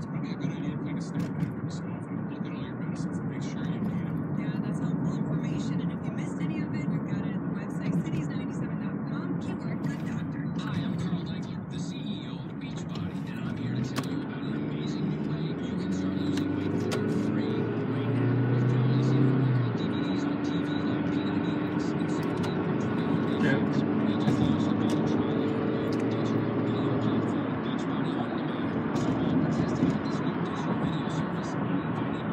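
Steady road and engine noise heard from inside a moving car's cabin. From about halfway, indistinct voices rise over the drone.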